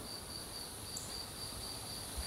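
Insects chirping and trilling in the woods at dusk: a high chirp pulsing several times a second over a steady, even higher buzz.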